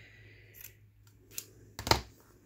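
Scissors cutting lace: a couple of soft snips, then a sharp, louder click of the blades near the end.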